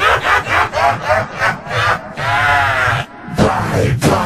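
A wavering, voice-like sound effect in quick repeated pulses, like a cackling laugh, with a long held note about two seconds in, over intro music.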